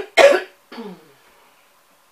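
A woman coughs twice in quick succession into her fist, then makes a short, quieter sound in her throat.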